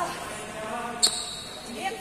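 A single sharp knock with a short, high ringing after it about a second in, over faint background voices.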